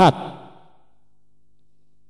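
A man's narrating voice ends a word with a short echoing fade, then a pause with only a faint steady low hum.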